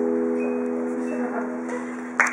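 The last chord of an acoustic guitar accompaniment ringing out at the end of a song, several held notes slowly fading away.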